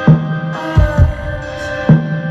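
Live band playing a slow instrumental passage: a steady held chord over a sparse drum pattern, a pitched drum strike followed by two deep thuds, repeating just under every two seconds.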